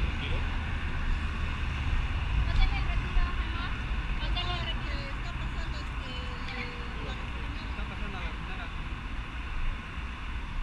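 Steady low rumble of street traffic, with faint voices of people talking nearby.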